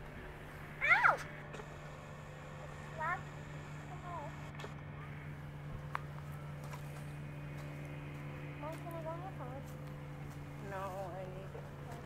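Short chirping calls made of quick rising and falling sweeps, loudest about a second in and repeated in fainter groups a few more times, over a steady low motor hum.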